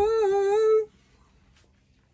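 A person's voice holding one long hummed or sung note that wavers slightly in pitch, then stops abruptly under a second in, leaving near silence.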